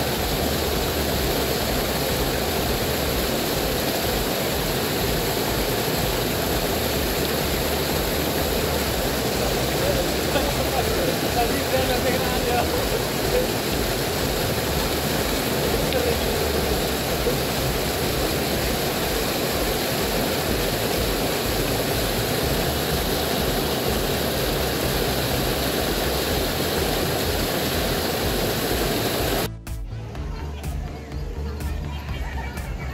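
Small waterfall spilling over a stone wall and churning into the pool below: a constant, even rushing of water that cuts off abruptly near the end.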